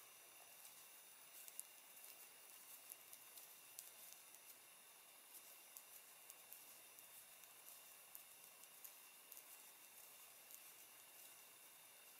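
Near silence with faint, irregular light ticks from knitting needles working a purl row, stitch by stitch.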